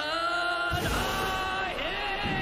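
An anime giant's long, drawn-out bellow of "I'm hungry!" in Japanese, one held call that dips briefly in pitch near the end. A low rumble comes in under it about a second in.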